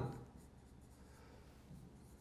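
Faint scratching and tapping of a pen writing on the surface of a touchscreen display.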